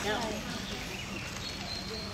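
Voices of people talking in the background, with no distinct other sound standing out.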